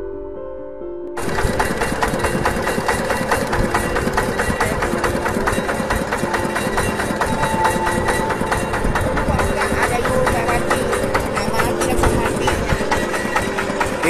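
A boat's engine running steadily under background music. The music plays alone for about the first second, then the engine noise comes in suddenly and stays loud.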